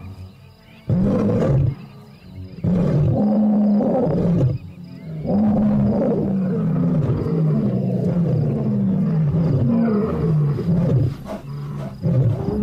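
Deep animal roars: two longer calls with short pauses between them, then a quicker run of shorter roars and grunts.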